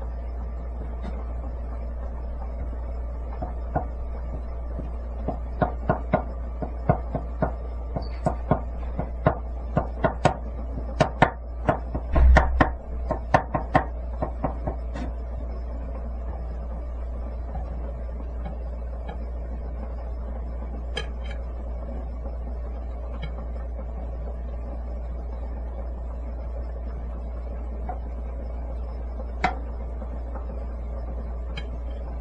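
Kitchen knife cutting thin strips of egg-white sheet on a wooden cutting board: a run of sharp knocks of the blade on the board that quickens and grows loudest a little past the middle, then a few single taps. A steady low hum runs underneath.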